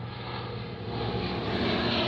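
Steady engine drone from a passing vehicle or aircraft, slowly growing louder.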